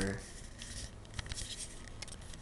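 Faint scratchy rustling with a few light clicks about a second in: handling noise from a handheld camera being turned.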